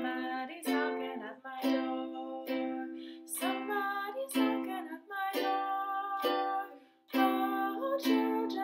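Makala ukulele strummed in chords, about one strong downstroke a second with lighter strums between, each chord ringing on.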